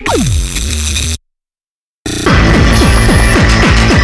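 Harsh, noisy electronic music. It opens with a falling pitch sweep, cuts out to total silence for about a second, then comes back with a fast pounding run of kick-drum hits, each dropping in pitch.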